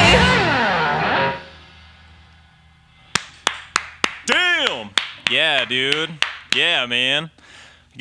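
A rock band's closing chord on distorted electric guitars, sliding down in pitch and stopping about a second and a half in. After a short quiet gap come a few claps and drawn-out cheering shouts.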